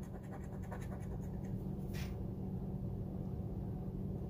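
A handheld metal scratcher tool scraping the coating off a scratch-off lottery ticket, in short scratches with one sharper stroke about halfway, over a steady low hum.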